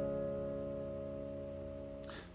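Semi-hollow electric guitar's strummed C chord ringing out and slowly fading, the last chord of the verse progression.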